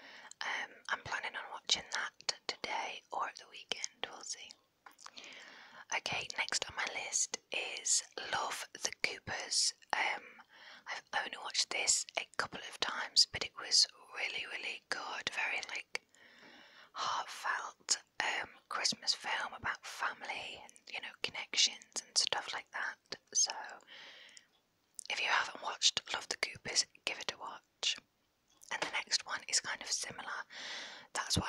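A woman whispering close into a small clip-on microphone, with short pauses and small sharp clicks between words.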